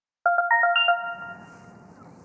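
Short electronic chime jingle: about six quick bell-like notes in under a second, ending on a higher note that rings out and fades, used as a transition sting.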